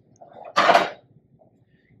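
A brief scraping clatter, about half a second long and peaking just under a second in, as a metal lab ring stand with its clamp is picked up and handled.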